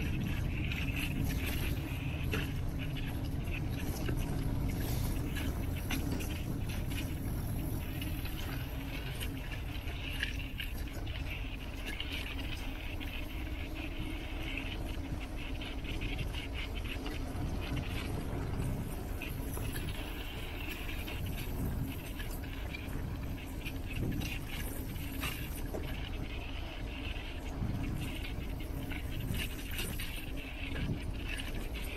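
Bicycle ridden along a rough dirt path: a steady low rumble of tyres and wind on the microphone, with frequent small clicks and rattles as the bike jolts over the ground.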